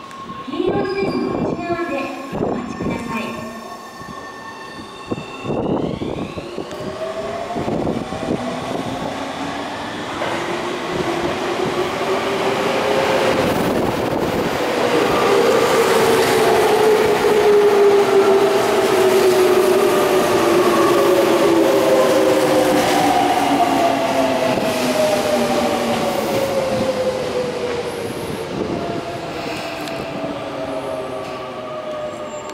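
Tobu 20050-series electric commuter train pulling in and braking to a stop. Its traction motors whine in several tones that fall slowly in pitch as it slows, over the rumble of wheels on rails, loudest about halfway through as the cars pass.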